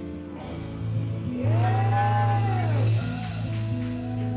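Live duet of a man and a woman singing with keyboard accompaniment. About a second and a half in, a loud low note is held for about a second and a half while a voice arches up and back down above it.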